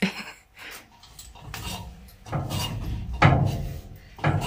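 A person climbing down an aluminium ladder: scuffs, rubbing and knocks from the rungs and shoes. The loudest knocks come a little after three seconds in.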